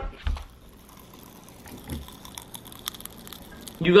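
Chewing a mouthful of pizza topped with Pop Rocks candy, with a faint run of tiny crackling pops in the second half.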